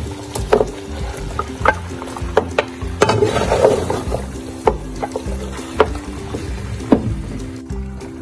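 A plate used as a scoop stirs beef karahi in a metal karahi pan: scattered clinks and scrapes against the pan over a light sizzle, busiest about three to four seconds in. Background music with steady held tones plays underneath.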